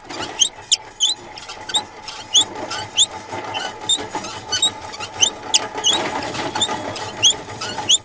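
A run of short, high squeaks, each rising in pitch, about two or three a second, over a faint steady hum: cartoon sound effects.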